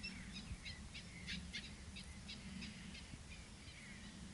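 Faint bird calls: short high chirps repeated about three to four times a second, over a low steady hum.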